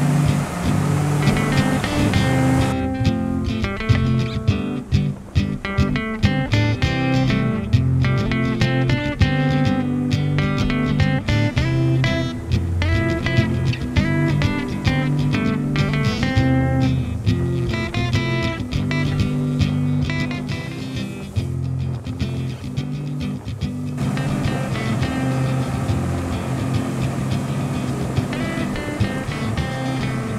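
Background music led by guitar, with a steady beat.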